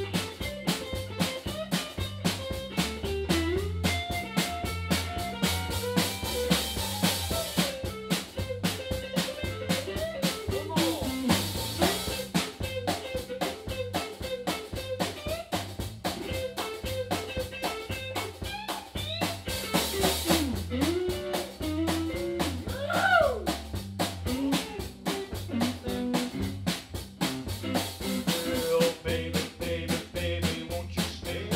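A band playing an instrumental passage: a drum kit keeps a steady, fast beat over a bass line, while a guitar plays a lead with notes that slide up and down.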